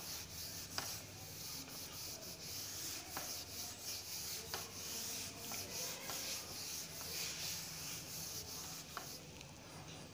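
A cloth rubbing back and forth across a whiteboard, wiping off marker writing: a soft, wavering hiss of repeated strokes that stops about a second before the end.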